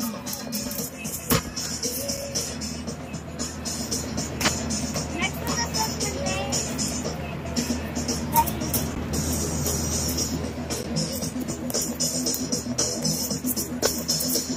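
Background music playing over a steady fan noise close to the microphone, with a couple of sharp knocks from the phone being handled in the first few seconds.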